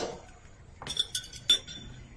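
A few sharp clinks of hard objects on a dinner table, bunched between about one and one and a half seconds in, two of them with a short high ring like metal or glass. This is the film soundtrack playing through the screen share.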